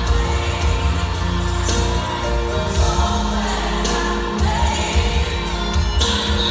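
Gospel-style worship song with singing over a strong, steady bass line.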